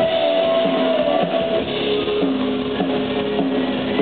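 Live rock band playing an instrumental stretch led by strummed electric guitars, loud and steady.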